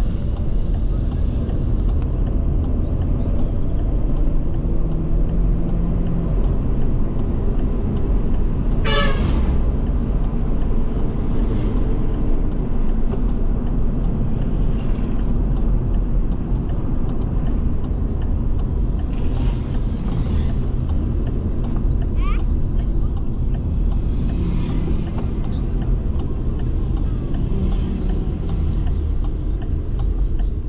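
Steady low rumble of car engine and tyre noise heard inside the cabin while driving. A vehicle horn toots about nine seconds in, and a few fainter brief sounds come later.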